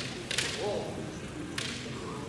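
Two sharp cracks of bamboo shinai striking, about a second apart.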